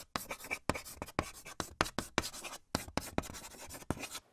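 Chalk writing on a chalkboard: a quick, irregular run of short scratchy strokes.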